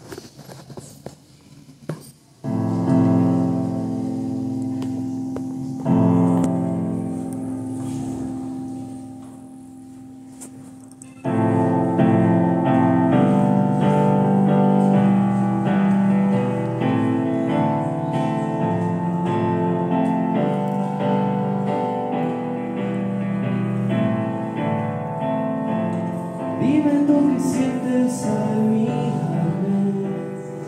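Korg digital piano opening a song: after a couple of quiet seconds, two long chords are struck and left to ring and fade, then from about eleven seconds in it settles into a steady, flowing accompaniment.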